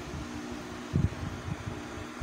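Steady machine hum holding two fixed low tones, with a few short low thumps about a second in.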